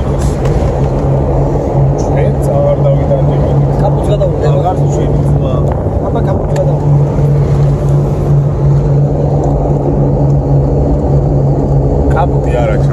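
Steady low drone of a car's engine and road noise, heard from inside the cabin while driving.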